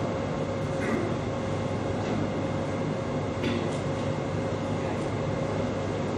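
Steady low rumble of a hall's background noise through the microphone system, with a faint steady hum and a couple of soft knocks about a second in and midway.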